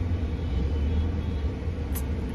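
Steady low rumble inside a car's cabin, from the car's engine and road noise.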